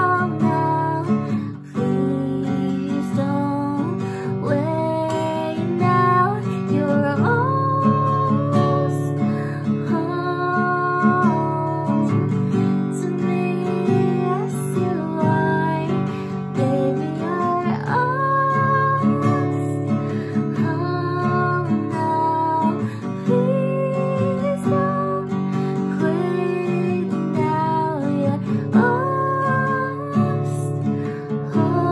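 A woman singing a slow, gentle song while strumming an acoustic guitar.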